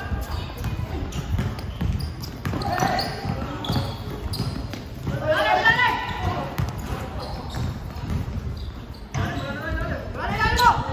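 A basketball bouncing on a hard court during play, with players shouting about three seconds in and again around five to six seconds.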